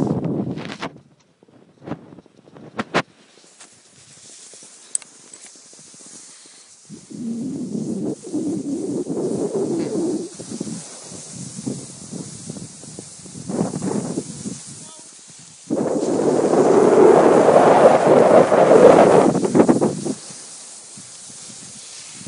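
Skis sliding and scraping over snow, with wind rushing on the microphone of a camera carried by a moving skier. The rushing comes in stretches, loudest from about 16 to 20 seconds in, with two sharp clicks about 2 and 3 seconds in.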